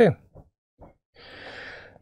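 A man's word trails off, and after a brief pause he draws an audible in-breath through the last second before speaking again.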